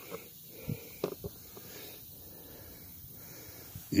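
Quiet background hiss with a few short, soft knocks in the first second and a half, typical of a handheld camera being handled close to the microphone.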